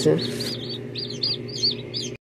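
A box of newly hatched chicks peeping: a busy chorus of short, high chirps, several a second, over a steady low hum.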